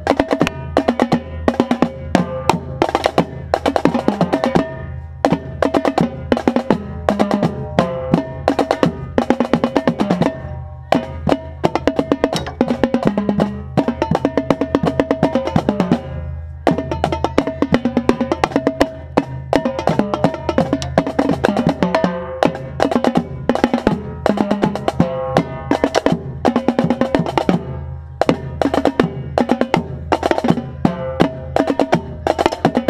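Marching tenor drums played close up by their own drummer, together with the rest of a drumline: fast stick strokes and rolls on the pitched tenor heads, with a few short breaks in the playing.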